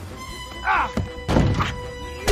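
Animated-film soundtrack: music with steady held notes, punctuated by about five short thuds and knocks from the on-screen action.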